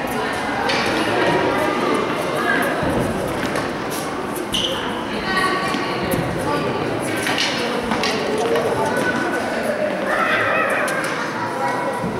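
Tennis balls being hit with rackets and bouncing off the court and practice wall in a large indoor hall: irregular sharp knocks, several close together about two-thirds of the way in. High children's voices call out between them.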